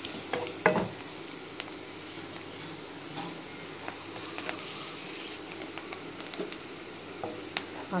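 Chopped onions and curry leaves sizzling in hot oil in a kadai, with a spatula scraping and clicking against the pan as they are stirred.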